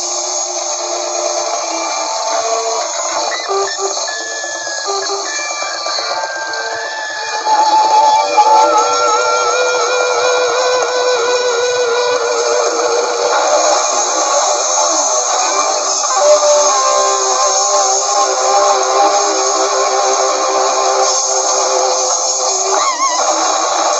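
Live noise-rock band playing an instrumental passage: drums under electric guitars holding sustained, wavering tones. It gets louder about seven and a half seconds in.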